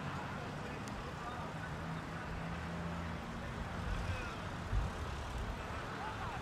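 Outdoor ambience of a steady low motor hum, like road traffic, with faint distant shouts from the pitch and a single faint sharp click about a second in.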